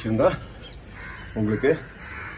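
Crows cawing in the background, between a man's short spoken words.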